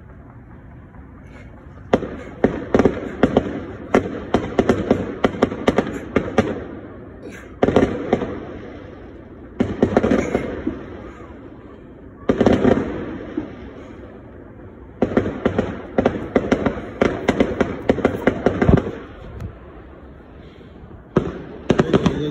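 Fireworks going off in repeated volleys: rapid strings of sharp cracks and pops lasting a few seconds each, with short lulls between. The first volley starts about two seconds in.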